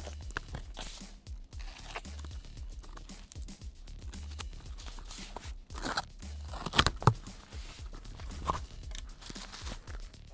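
Background music over the crackle, rustle and scraping of a cardboard shipping box being cut open with a box cutter and its flaps pulled back, with a cluster of sharp cardboard clicks about seven seconds in.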